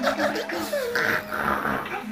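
A young woman sobbing and wailing into a tissue: high, wavering cries that rise and fall without words.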